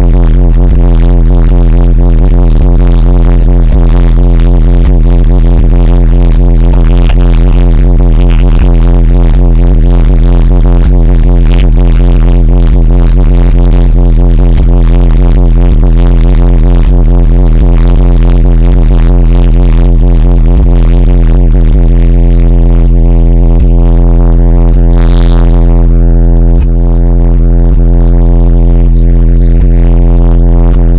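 Car audio subwoofers playing a sustained deep bass tone at extreme volume, overloading the microphone so it sounds distorted. The note holds steady, with a brief dip about three-quarters of the way through.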